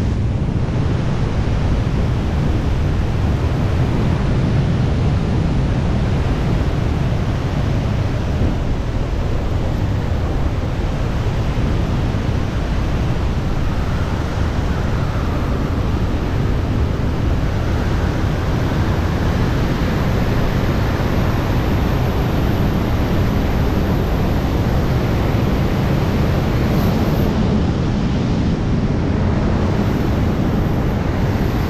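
Wind rushing over the microphone of a camera carried in wingsuit flight: a loud, steady, deep rush of airflow buffeting at flight speed.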